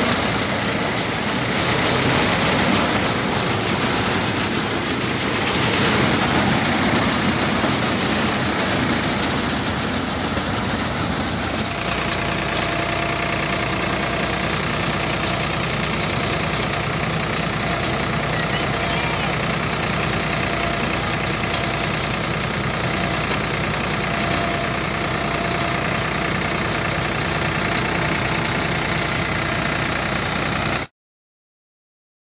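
Tractor-driven groundnut thresher running under load as vines are fed in by hand, its drum noise over the Farmtrac 45 hp tractor's diesel engine. The sound is steady and loud and shifts abruptly about twelve seconds in, after which steady engine tones stand out.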